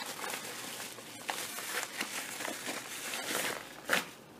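Yellow padded mailer envelope crinkling and rustling as a hand rummages in it and pulls a lighter out, with many small irregular crackles.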